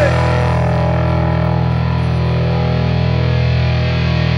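Closing chord of a rock song: a distorted electric guitar chord held and left ringing steadily.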